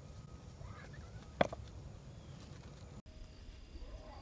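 A single sharp clack of rock knocking against rock about a second and a half in, as a riprap stone is moved underfoot or by hand, over faint wind rumble on the microphone. The sound drops out for an instant near the end.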